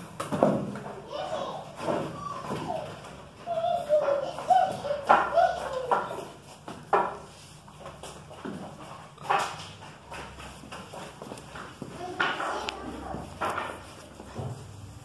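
A Doberman puppy play-fighting with an adult Doberman: bursts of high, wavering growls and yelps, with sharp knocks and scuffles of the dogs on the tile floor.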